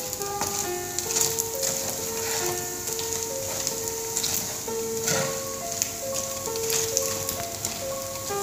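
Background music with a simple melody over the steady sizzle of glutinous rice patties frying in brown sugar syrup in a pan, with a metal spatula scraping and turning them now and then.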